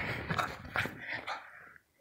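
A pug playing with a stuffed toy: a run of short, irregular scuffs and clicks that die away near the end.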